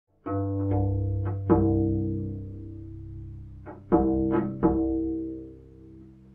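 Music of plucked string notes in two short phrases over a held low bowed string note, fading toward the end.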